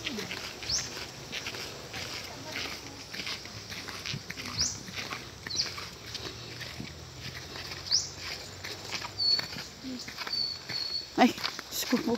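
Footsteps and sandal scuffs on a dirt trail, irregular and close, with a few short high chirps from birds scattered through. Near the end a sudden sharp scuffle and a woman's cry of "Ay!".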